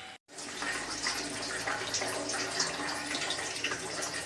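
A pot of cow peas boiling hard, with a steady bubbling that starts just after a brief silence.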